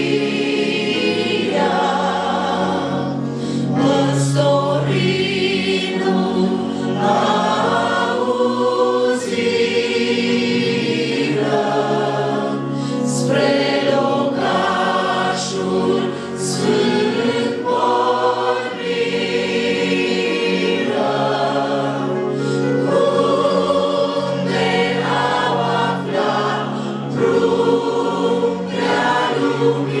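A church congregation singing a Romanian Christmas carol together, led by a few singers on microphones, many voices carrying one continuous melody.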